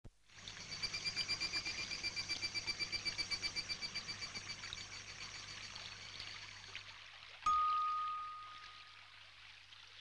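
A high trill pulsing rapidly, about seven beats a second, over a faint watery hiss, fading out around seven seconds in; then a single bright chime-like tone, struck once and ringing away over about two seconds.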